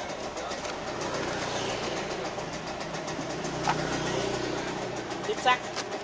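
An engine running steadily in the background, swelling a little about three to four seconds in.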